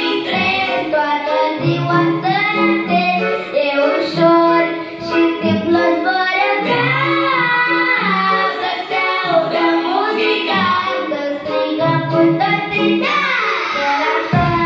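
A six-year-old boy singing a Romanian pop song into a handheld microphone over a pop backing track.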